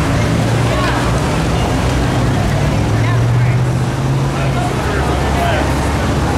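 A steady low motor drone, with faint voices over it.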